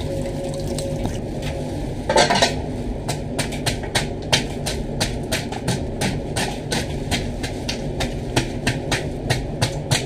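A knife scraping scales off a large whole fish in a sink: rapid, evenly repeated scraping strokes, a few a second, starting about three seconds in, after one louder scrape a little after two seconds. A steady low hum runs underneath.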